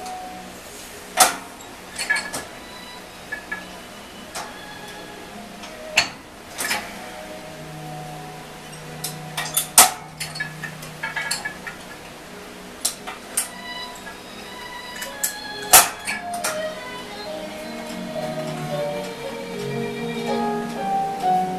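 Metal clinks and clanks from an Inspire weight machine as a bar is pressed through bench-press reps, a few sharp knocks every several seconds, over steady background music.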